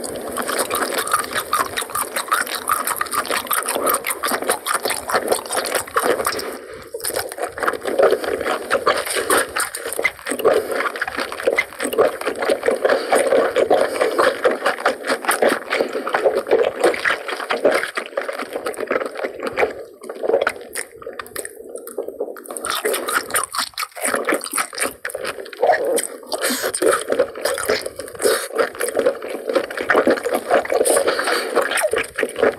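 Close-miked wet chewing of cooked octopus tentacle: a dense stream of small, sticky smacking clicks, broken by a few brief pauses.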